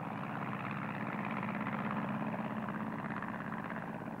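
Piston aero engine of a propeller biplane droning steadily in flight, a fast even beat of firing strokes.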